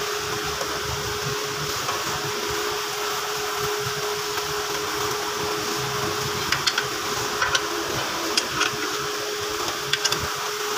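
A steady mechanical hum with a constant low tone, like a fan, and a few light metallic clicks and taps in the second half as the automatic transmission's oil filter is handled against the valve body.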